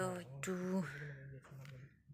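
Only speech: a woman talking, stopping shortly before the end.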